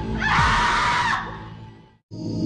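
A woman's scream, loudest for about a second from a quarter second in and then dying away, over a dark film-trailer score with a low sound sliding downward beneath it; everything cuts off abruptly at the end.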